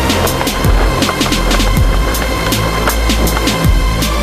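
Electronic music with a steady, fast drum beat and deep bass notes that slide down in pitch.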